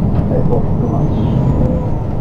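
City bus running along a street, heard from inside the cabin: a steady, loud low rumble of engine and road noise.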